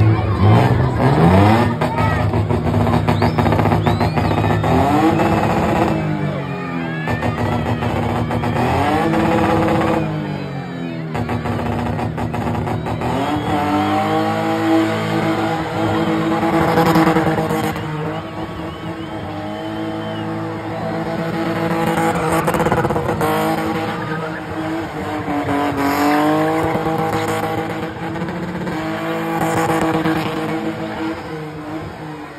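BMW E30 being spun: its engine revving hard, the pitch rising and falling in long sweeps every few seconds, with the rear tyres squealing as they spin on the tarmac.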